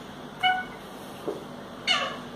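Wooden interior door swung open by its lever handle: a short, steady-pitched squeak about half a second in, then a click with a falling squeak near the end.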